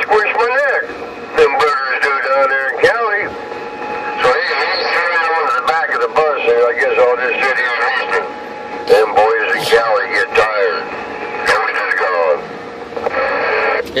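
Voices of distant stations coming in over a Uniden Grant LT CB radio's speaker on channel 11 (27.085 MHz). They sound thin and hard to make out, with a steady tone running under them. These are loud long-distance stations talking over the channel.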